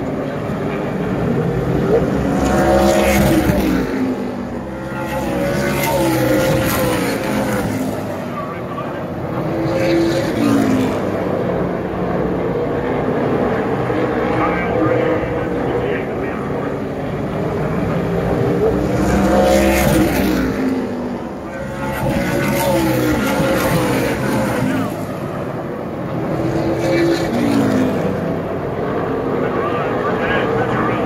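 Pack of stock car engines racing around an asphalt oval, swelling and falling in pitch as the field passes the grandstand roughly every eight seconds, with a steady rumble in between.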